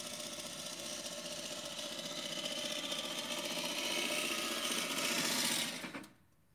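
Swardman Electra battery-powered reel mower running as it is pushed across the lawn, the electric motor and spinning cutting reel making a steady whir. The whir grows louder as the mower comes closer and stops abruptly at the very end.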